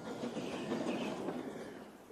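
Small narrow-gauge steam locomotive puffing steadily as it runs along the line hauling loaded trucks.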